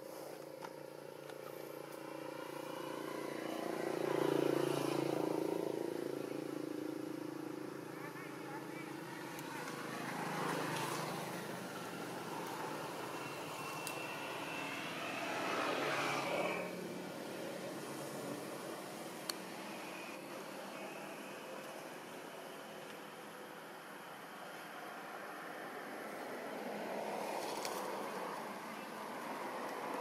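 Road vehicles passing one after another, each swelling and then fading away. The loudest pass comes about four seconds in.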